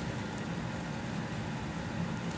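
Steady low hum and hiss of background room noise, with no distinct event.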